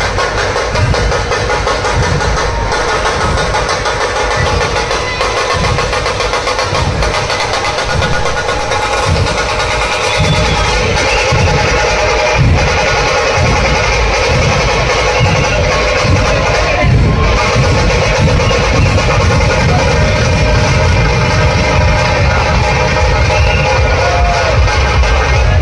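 Loud, continuous procession music: heavy drums beating under a dense, steady ringing din.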